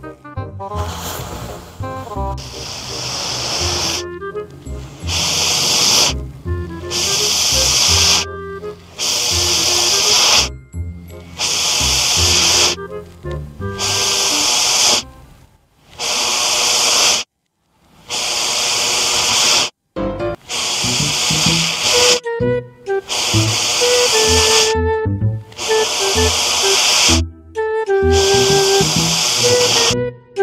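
Repeated long puffs of breath blown through a garden hose into a balloon, each a hiss lasting one to two seconds with short breaks between, over background music.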